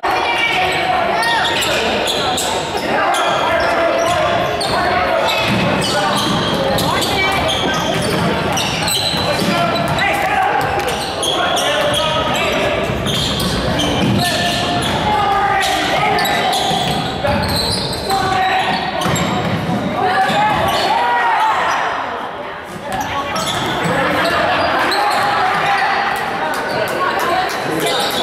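A basketball dribbled on a hardwood gym floor in repeated bounces, under voices of spectators and players calling out, all echoing in a gymnasium.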